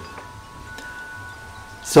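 Faint steady ringing tones at several pitches sounding together, chime-like, held for most of two seconds.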